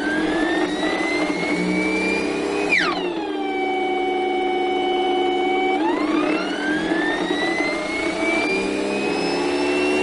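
GE starter-generator electric motor running unloaded with a pitched whine that climbs as it speeds up with its field disconnected (field weakening). About three seconds in, the pitch drops abruptly as the field is reconnected and drags the speed down. It holds steady, then climbs again from about six seconds in as the field is taken off once more.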